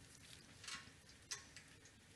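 Near silence: faint background hiss, with two faint clicks less than a second apart.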